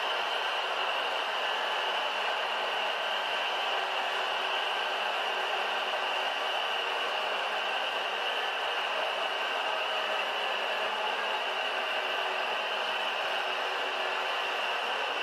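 Steady roar of a large stadium crowd shouting and cheering. It starts abruptly and holds at a constant level throughout.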